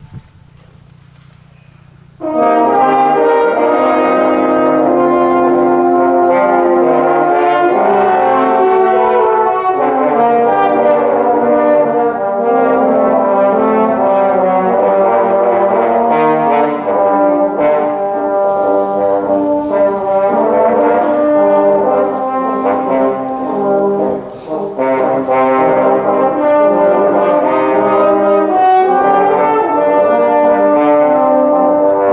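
A French horn quartet begins playing about two seconds in, after a quiet hush, and carries on with loud, sustained chords and moving lines; the playing dips briefly about 24 seconds in.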